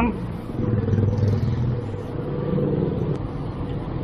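Street traffic heard from a moving bicycle: motorcycle and car engines running nearby over a steady low rumble of road and wind noise, with a steady hum throughout.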